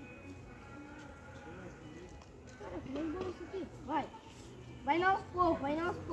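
People's voices talking, faint at first and getting louder over the last few seconds.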